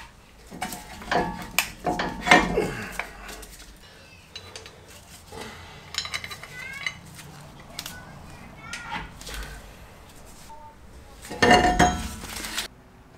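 Intermittent metallic clinks and clanks of hand tools and a Jeep Wrangler JK's front brake caliper being handled as the caliper is unbolted, lifted off the rotor and hung up, with a few short squeaks and a louder clatter near the end.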